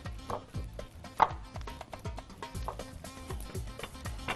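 Raw chicken drumsticks being handled with tongs and set into a glass bowl: a run of soft knocks and clicks, with one sharper clink about a second in, over quiet background music.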